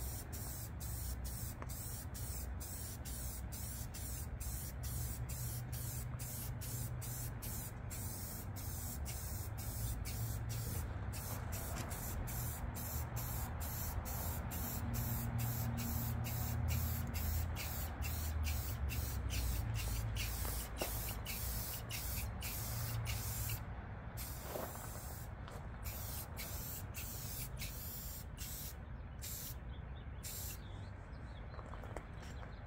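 Aerosol can of Rust-Oleum orange spray paint hissing steadily as paint is sprayed onto a mower hood, with a few short breaks in the spray in the last seconds, over a low steady rumble.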